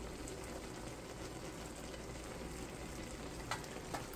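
Salmon-head and spinach broth simmering in a wok on an electric stove: a steady bubbling hiss. Two light clicks sound near the end.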